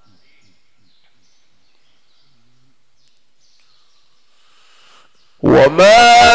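A lull with only faint background and a few faint high chirps, then, about five and a half seconds in, a man's voice starts a loud, melodic, drawn-out Quran recitation in the mujawwad style, through the mosque's microphone and speakers.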